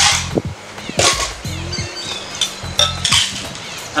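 Ice cubes dropping into a copper cocktail shaker tin, a series of irregular metallic clinks and knocks.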